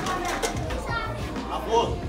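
An air hockey mallet cracks the plastic puck with one sharp clack at the start, followed by a voice calling out over the table.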